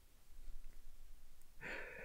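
A man's quiet in-breath near the end, with faint room tone before it.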